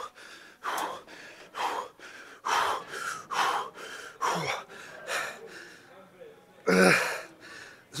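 A man breathing hard in short gasping breaths, about one a second, winded mid-way through a 100-rep leg extension set, with a louder voiced exhale near the end.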